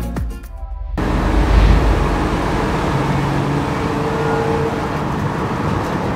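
Guitar music dies away in the first second, then steady road and engine noise of a vehicle driving along a road.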